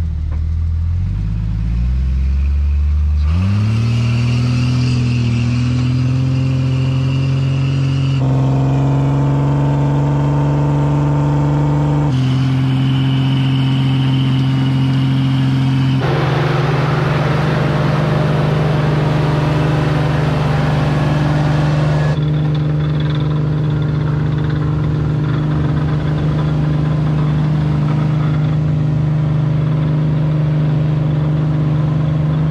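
Jeep Cherokee engines revving up and held at high revs under heavy load while towing a stuck pickup out of soft sand on recovery straps. The pitch climbs over the first few seconds, then holds steady, jumping to a new steady pitch a few times.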